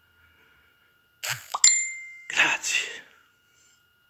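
A short rush of noise, then a bright, high bell-like ding that rings for about half a second, followed by a breathy rush of noise close to the microphone.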